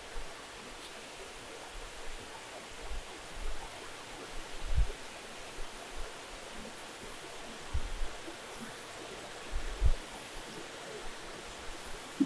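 Steady hiss of water running and splashing into fish vats from fill pipes, with a few soft low thumps.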